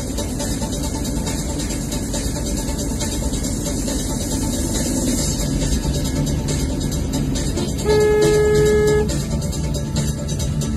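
A car horn sounds one steady blast about a second long, about eight seconds in, over background music and the steady road noise of a car in motion.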